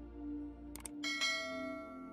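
Sound effect of a subscribe-button animation: two quick mouse clicks just before a second in, then a bright bell chime for the notification bell that rings and fades away. Under it, soft ambient music with a slow pulsing tone.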